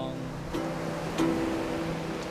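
Acoustic guitar closing out a song: the last chord is strummed twice more and left to ring and fade.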